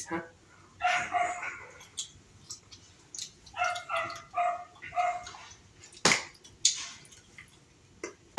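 A dog barking in short, high-pitched barks: two about a second in, then four quick ones a few seconds later. A sharp knock follows near six seconds.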